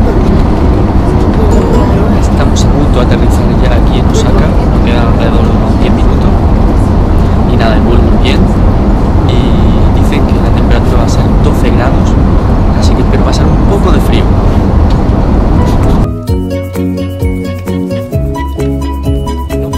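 Loud, steady roar of an airliner cabin, the jet engines and air rushing, with voices over it. About sixteen seconds in, the roar stops and music with clear notes takes over.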